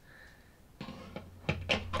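A plastic plug-in mains socket tester being pushed into a socket on an extension lead: a few sharp plastic clicks and knocks, and about a second and a half in a low steady hum starts up.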